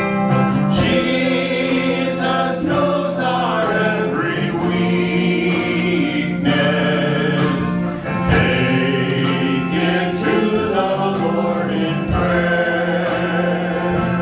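Worship team of men's and women's voices singing a worship song together in harmony, held notes in phrases of a few seconds, over instrumental accompaniment.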